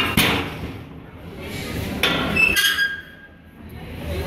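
Steel clanking as the cook-chamber door and expanded-metal grates of a propane-tank smoker are handled: a sharp clank at the start, then a cluster of clinks with a brief metallic ring about two seconds in.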